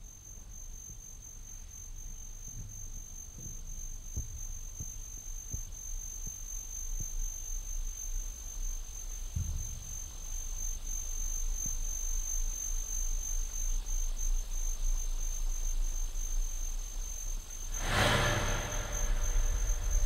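Electronic sound of an electroacoustic concert piece: a steady, thin, high tone over a low rumble that slowly swells louder, with scattered soft low knocks. About two seconds before the end a loud rush of noise breaks in.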